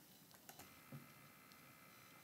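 Near silence with two faint clicks about half a second and one second in, from a computer mouse selecting text.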